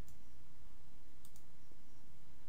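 A single faint click, a computer mouse button, about a second in, over a steady low hum of room and microphone noise.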